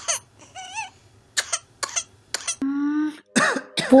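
A whooping cough (pertussis) patient coughing in a run of sharp, separate bursts, with a short wavering whimper about half a second in and a held, pitched sound lasting about half a second near the middle, then more coughing toward the end.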